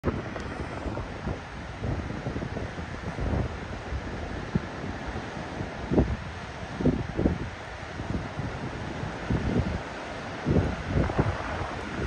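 Wind buffeting the microphone in irregular gusts over the steady rush of rough surf breaking on the beach.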